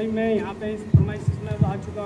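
A man speaking over a handheld microphone, with a steady low hum underneath. From about a second in come several dull low thumps, typical of handling or breath pops on the microphone.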